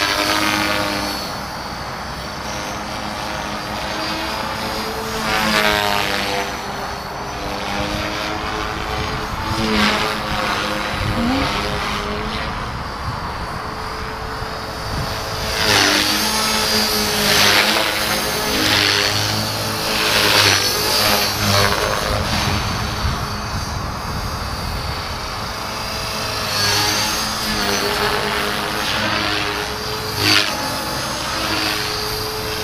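ALZRC Devil Fast 450 SDC electric RC helicopter flying 3D aerobatics: a steady motor whine with rotor blades swishing, rising and falling in pitch and loudness as it swoops past several times. The loudest passes come a little past halfway through.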